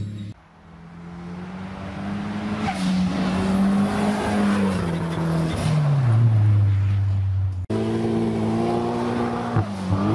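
Recorded car engine sound fading in, its pitch falling slowly over several seconds over a rushing hiss. About eight seconds in it cuts abruptly to another engine recording running at a steadier pitch.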